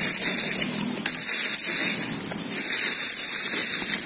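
Steady, high-pitched chorus of crickets and other forest insects, continuous and unbroken.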